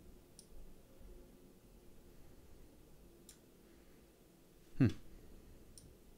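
A few faint computer mouse clicks, about three, spaced a couple of seconds apart. A short hummed 'hmm' near the end is the loudest sound.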